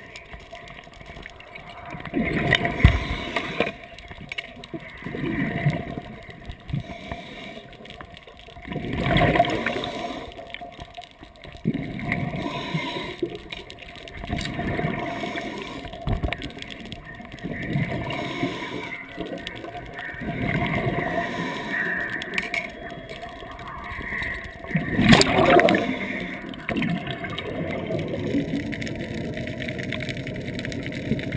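Underwater bubbling and gurgling picked up through a camera housing, with irregular louder swells of rushing noise and handling knocks as the spearfisher works the spear and gear.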